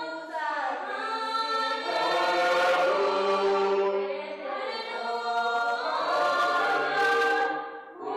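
A church choir of mixed voices singing a hymn in long held phrases, with a short break about four seconds in and the phrase ending just before the close.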